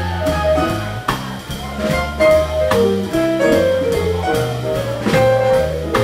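Live jazz band playing a gospel tune: a walking bass line under held keyboard notes, with the drummer's sticks on the cymbals and drums.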